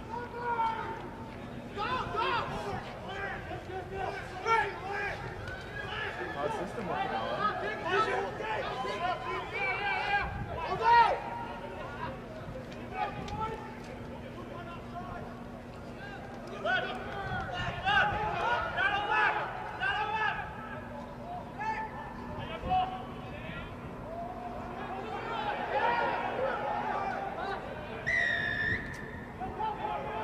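Rugby players and spectators shouting and calling across the pitch in short, scattered bursts during open play. Near the end comes one short, high referee's whistle blast, which stops play for a penalty given against an offside prop.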